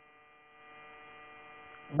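Steady electrical hum in the audio chain, several steady tones at once, getting slightly louder about half a second in.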